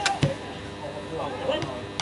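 A football struck by a boot on a grass pitch: one sharp thud just after the start, then faint shouts from players.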